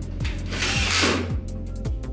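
Cordless drill driver briefly running a screw into the Hemnes daybed frame's metal rail, a loud burst from about half a second in to just past a second, over background music.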